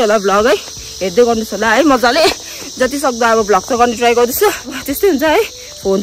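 A woman talking over a steady, high-pitched insect chorus.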